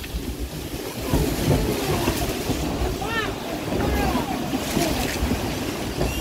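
Water rushing and spraying around a log flume boat just after its splashdown, with wind buffeting the microphone. Riders' voices rise and fall over it for a few seconds.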